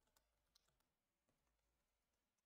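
Near silence with a few faint computer keyboard keystrokes as a command is typed.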